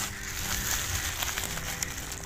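Woven plastic sack rustling and crinkling as it is handled and opened by hand, with a few sharp crackles in the second half.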